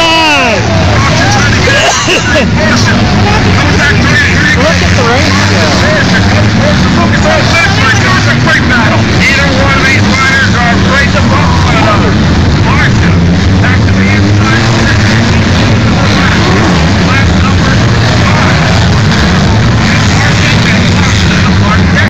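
Motocross bikes' engines revving up and down as the riders race around the track, their pitch rising and falling, over a steady low engine drone, mixed with voices from the crowd.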